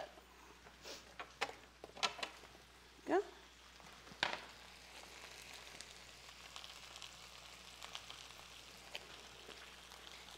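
Bell peppers and mushrooms sautéing in olive oil in a frying pan, a faint steady sizzle with fine crackles. A few light clicks and taps come in the first four seconds.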